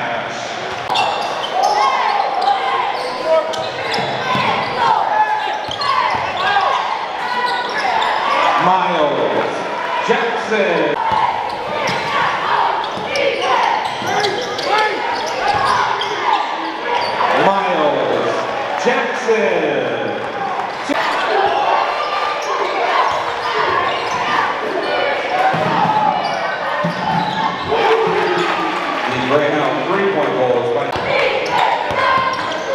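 Live gym sound of a basketball game: spectators' voices and shouts carrying on throughout, with a basketball bouncing on the hardwood court.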